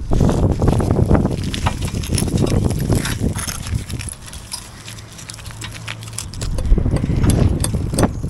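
Crumbling mortar and brick fragments scraping and rattling as a gloved hand works a loose slip of brick and rubble out from beneath an old lintel: a rapid patter of small clicks and grinding, busiest in the first few seconds and again near the end. A low steady hum runs underneath.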